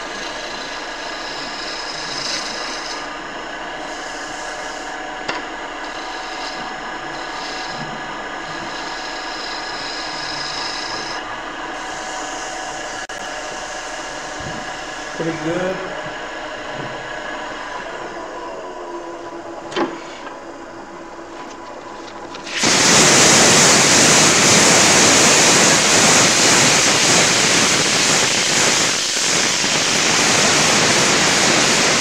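Small wood lathe running steadily with a motor whine as a turning tool takes light cuts on a wooden rolling-pin blank. About two-thirds of the way in, a loud, steady rushing hiss starts suddenly as abrasive is pressed against the spinning pin to sand it.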